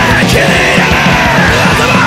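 A hardcore punk/metal band playing loud and fast, with pounding drums under a yelled, shouted lead vocal.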